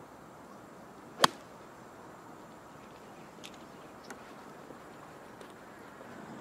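A golfer's club striking the ball on a fairway approach shot: one sharp crack a little over a second in, followed by faint outdoor air.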